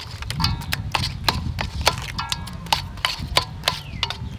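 A metal spoon clinking and scraping against a metal mixing bowl while stirring shrimp in thick batter: sharp irregular clinks, about three or four a second. A short animal call sounds twice, near the start and a little past the middle.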